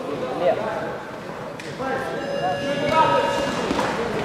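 Voices shouting and calling in a large, echoing arena hall, with one long held call in the second half and a single sharp knock about a second and a half in.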